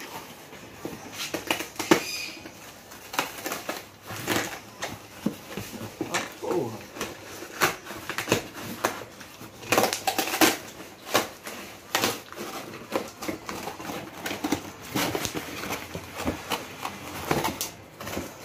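A cardboard shipping box handled and unpacked by hand: irregular rustles, scrapes and knocks of cardboard flaps and packaging, with an inner box being lifted out near the end.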